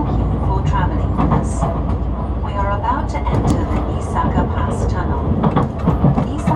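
Interior running noise of a JR Central HC85 hybrid express train: a steady low rumble with a person's voice talking over it.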